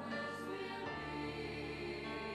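Choral music: a choir holding long sustained chords, moving to a new chord about a second in.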